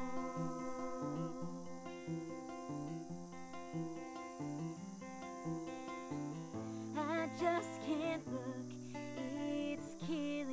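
Steel-string acoustic guitar strummed in a steady rhythm, with a voice singing briefly and loudest about seven seconds in.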